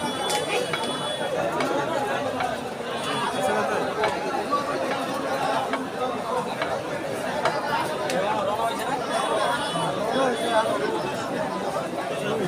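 Dense crowd chatter: many men talking at once in a steady, unbroken babble of overlapping voices.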